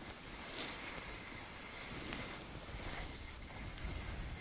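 Skis gliding over packed snow: a steady hiss with a low rumble, with some wind on the microphone.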